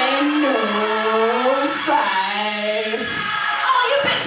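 A woman singing long held notes into a hand-held microphone, two sustained notes in a row that stop about three seconds in, followed by a rougher, noisier stretch.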